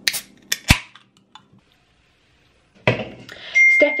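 Ring-pull of an aluminium Monster Ultra energy-drink can cracked open: sharp clicks and a short fizzing hiss of escaping gas in the first second. Near the end a steady high-pitched beep starts.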